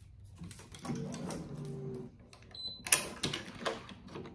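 Racquet stringing machine being worked. A faint low hum comes first, then a short high electronic beep a little past halfway. A sharp click follows, the loudest sound, then a few lighter clicks as the string and clamps are handled.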